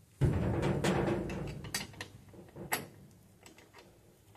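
A loud, low rumbling thud lasting about a second, then two sharp metallic clicks, from hands and tools working on a rear drum brake assembly.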